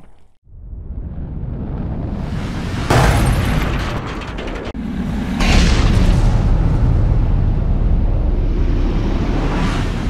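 Cinematic intro sound effects for an animated title: a swell building from near silence into a deep boom about three seconds in, then a second boom about five and a half seconds in, followed by a long low rumble.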